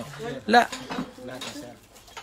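Ceramic bowls clinking against one another as they are handled and lifted out of a cardboard box.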